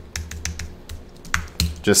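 Computer keyboard keys clicking in a quick, irregular run of single presses, as code is edited.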